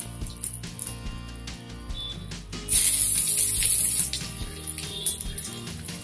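Hot oil sizzling softly around green chillies in a small tempering pan. About three seconds in it flares into a loud sizzle for about a second and a half as sliced onions go into the oil, with a few light clicks of a spoon. Background music plays throughout.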